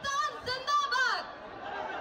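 A woman shouting a protest slogan into a microphone at a rally, her shout ending about a second in, followed by a steady murmur of the crowd.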